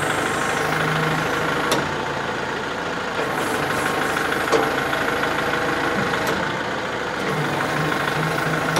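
Kubota MX4800 tractor's diesel engine idling steadily while the loader's hydraulics tilt the bucket side to side, with a few faint clicks along the way.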